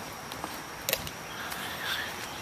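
Quiet outdoor background noise with a faint steady high tone. There is one sharp click a little before a second in, and a few lighter ticks.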